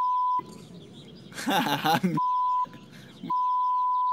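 Censor bleeps, a steady high beep tone heard three times: briefly at the start, again a little after two seconds, and a longer one near the end. They cover the birds' dubbed swearing. Between the first two bleeps there is a short burst of voice-like sound.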